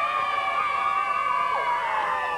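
A crowd of children and adults cheering and yelling together, their voices merging into one long, high, held shout.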